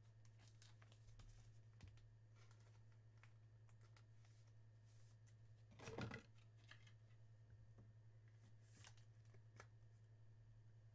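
Near silence with a low steady hum, broken by faint rustles and clicks from a trading card and its clear plastic holder being handled. One brief, slightly louder sound comes about six seconds in.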